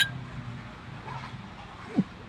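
Two glasses clinking once in a toast, followed by quiet background, with a short throat sound near the end as one drinker takes a shot of liquor.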